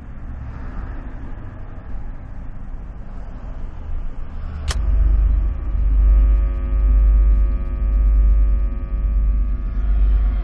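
Low rumbling ambient drone. About halfway through a single sharp hit sounds, after which several steady ringing tones hold over a deeper rumble that swells and fades about once a second.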